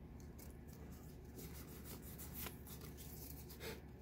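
Faint soft rustles and slides of Pokémon trading cards being flipped through by hand, a few brief scuffs over a low steady hum.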